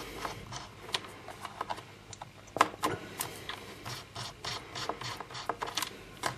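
Small screwdriver backing out the tiny screw on the plastic memory-bay cover of an Asus 1015B Eee PC netbook: irregular light clicks and scrapes, with the clearest clicks about two and a half to three seconds in.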